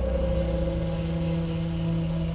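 A low, steady droning hum with a rumble beneath it, slowly fading.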